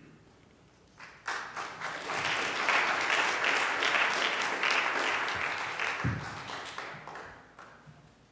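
Audience applauding: the clapping starts about a second in, swells to a steady patter, and dies away near the end.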